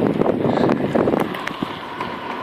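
Wind buffeting the microphone of a camera carried on a moving bicycle, a rough uneven rumble, with a few light clicks.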